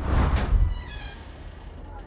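A heavy metal door being pushed open: a sudden low rumble and clatter at the start, settling within about a second.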